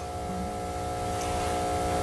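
A steady hum of several held tones over a low rumble, growing slowly louder.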